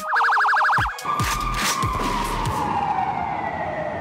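Electronic police-type siren: a fast warbling yelp for about the first second, then a single tone sliding slowly down in pitch as it winds down.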